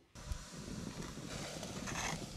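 Coarse spelt poured from a stone mortar into a pot of water heating over a wood fire: a faint, even hiss with a few light knocks.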